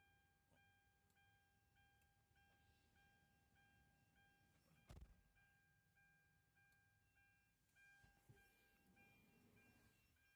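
Warning beeper of a retrofit power sliding door on a Hyundai Starex, sounding a steady electronic beep about every 0.6 seconds while the door is worked from the dashboard switch. A single sharp knock comes about halfway through.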